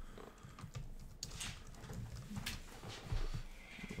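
A computer keyboard and mouse clicking: a few irregular, sharp taps.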